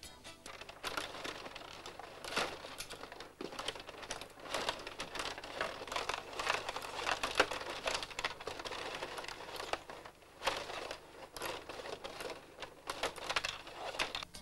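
Pola Super Hockey 500 table hockey game in play: a dense, irregular clatter of clicks and knocks as the rods are pushed and twisted and the plastic players and puck knock together.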